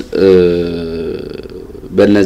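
A man's voice holding one long, level-pitched vowel sound, a drawn-out hesitation 'ehh' that slowly fades over nearly two seconds.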